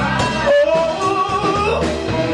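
Live soul band playing, with a guitar line of bending, sliding notes over bass and drums while the vocals pause.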